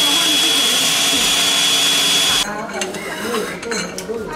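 High-speed stainless-steel grinder running with a steady high whine, grinding pearls into powder. It cuts off abruptly about two and a half seconds in, followed by a few clicks as the lid clamp is handled.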